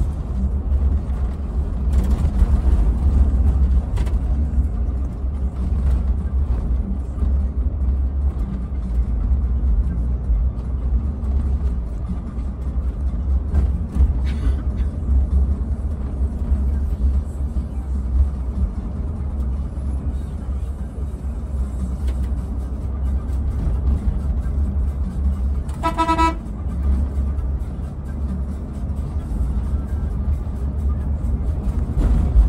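Steady low engine and road rumble inside a moving coach bus, with a vehicle horn sounding one short toot near the end.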